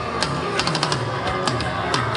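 Punk rock band playing live: drums and electric guitars at full volume, with regular drum and cymbal hits, heard from the audience in an arena.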